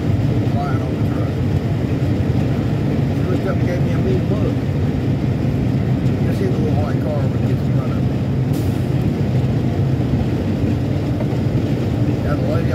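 Semi truck cruising on the highway, heard from inside the cab: a steady low drone of engine and road noise.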